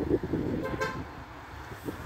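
A short car horn toot, one brief pitched beep just under a second in, over low street background noise.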